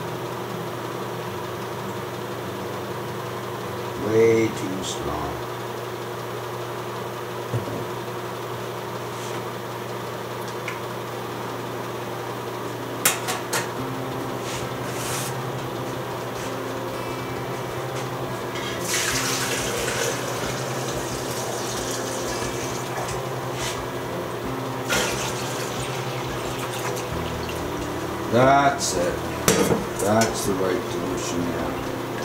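Yellow darkroom chemical poured from a stainless steel jug into a stainless steel processing tank, with a few sharp metal clinks, over a steady low hum.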